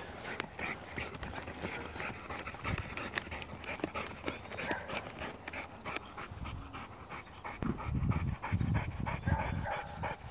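A dog panting and snuffling with its nose pushed into a gopher hole: a steady run of short, quick sniffs and breaths, getting louder and deeper for a couple of seconds near the end.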